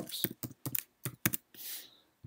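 Computer keyboard being typed on: a handful of separate keystrokes as a short word is entered, with a short soft hiss near the end.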